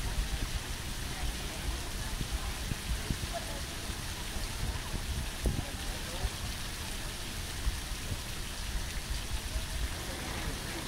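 Steady rain: an even hiss of falling drops with many small low thumps. It is a rain sound effect laid over sunny footage.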